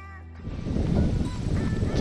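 Background music ends about half a second in, giving way to wind rumbling and buffeting on the camera microphone outdoors.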